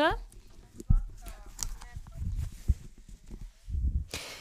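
A voice speaking faintly over a video call, with a few low bumps and thuds on the microphone.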